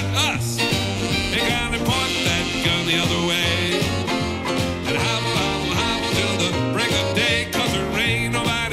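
Western swing band playing live: two fiddles take an instrumental break over upright bass, drums and electric guitar.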